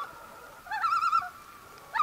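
An animal call repeated about once a second: each call is a short rising note running into a quavering, warbling tone. One call comes about a second in, and the next starts near the end.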